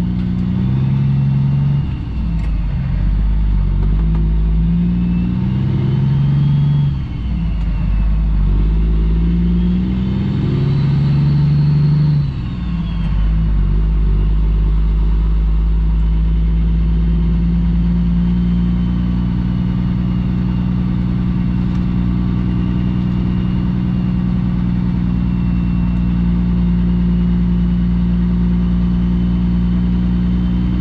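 2008 Kenworth W900L's Cummins ISX diesel engine pulling away from a stop under load, its pitch climbing and dropping three times as it shifts up through the gears, then running steadily at an even speed.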